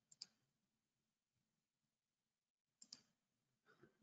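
Near silence: room tone with two faint short clicks, one just after the start and one a little before the end.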